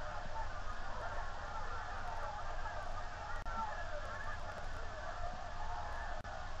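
Crowd noise from a football broadcast played through a television speaker: a thin, boxy wash of many overlapping voices with a low hum underneath.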